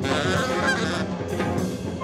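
Live free-jazz ensemble playing: a horn blows high, wavering notes with a quick upward slide partway through, over drums, bass and guitar.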